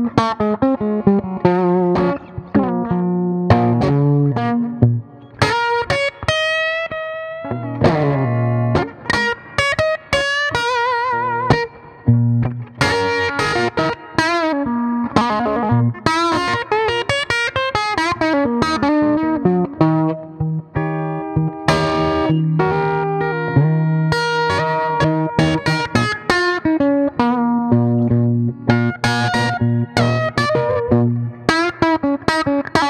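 Epiphone USA Casino hollow-body electric guitar with P-90 pickups, played through an amp with a little reverb: picked single-note lines with bent, wavering notes about a third of the way in, and strummed chords.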